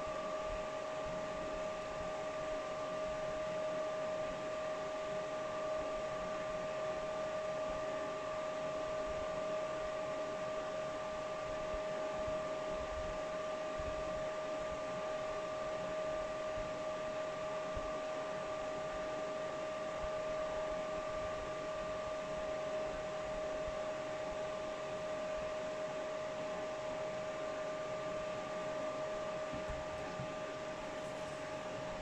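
Steady whir of a cryptocurrency mining rig's graphics-card fans, with a constant whine running through it.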